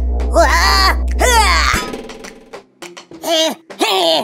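Cartoon sound effect: a steady low hum that cuts off suddenly about two seconds in, with a character's wordless gliding vocal cries over it, then short groans near the end as the iron character is pulled onto the magnet.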